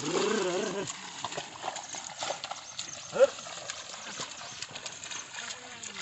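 Pair of oxen hauling a wooden leveling board through flooded paddy mud: irregular squelching and slapping of hooves and board in wet mud. A man's drawn-out, wavering call to the oxen opens it, and a short rising call comes about three seconds in.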